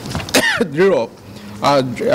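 A man speaking, with a throat clear about a third of a second in.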